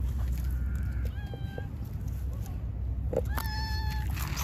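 A stray cat meows twice: a short meow about a second in, then a longer one near the end. The cat is asking for affection.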